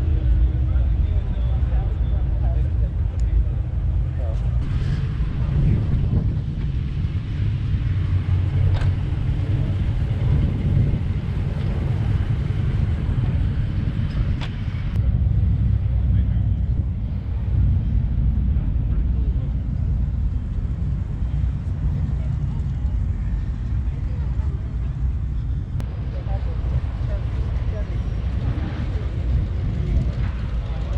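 Outdoor background noise: a steady, heavy low rumble with faint voices in the background.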